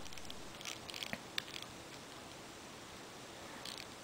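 A few faint clicks from a BlackBerry Curve's trackball and keys being pressed to open the web browser, over low hiss.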